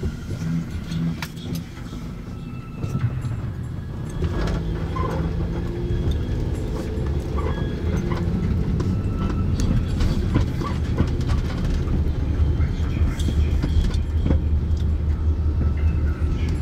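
Car engine and road noise heard from inside the cabin. It stays low while the car waits at a light, then grows louder from about four seconds in as the car pulls away and picks up speed, settling into a steady rumble.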